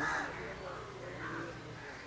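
A crow cawing faintly in the background, over a low steady hum.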